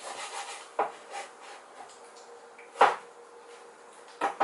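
Kitchen handling noise: a brief rubbing scrape, then a few sharp knocks, the loudest near three seconds in, over a faint steady hum.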